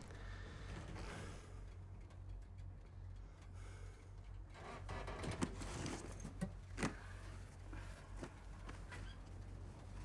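Low steady rumble inside a Sherman tank's turret, with faint rustling and a couple of sharp clicks in the middle as a crewman pulls off his tanker's helmet.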